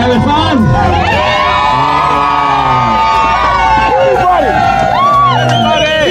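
A boatload of passengers, children among them, yelling and cheering together in long drawn-out whoops, over the steady low rumble of a speedboat running at speed.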